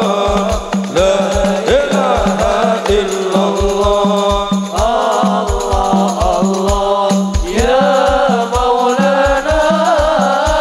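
Hadroh ensemble performing: a man sings a chanted devotional melody into a microphone over a steady, rapid beat of frame drums and bass drum, played through loudspeakers.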